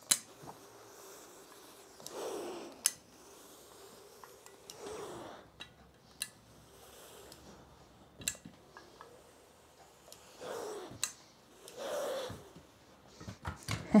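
A hose-fed steam iron pressing tucked linen on an ironing board: about five sharp clicks and four short bursts of steam hiss, with the iron sliding over the fabric.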